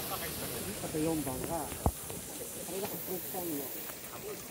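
Overlapping chatter of many spectators' voices with a steady high hiss, and one sharp click just under two seconds in.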